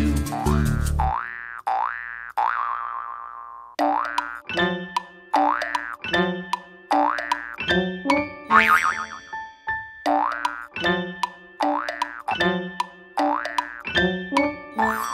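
Instrumental break of a children's song with cartoon boing effects: short springy rises in pitch repeated in a steady beat over light plucked notes. The fuller band drops out about a second in.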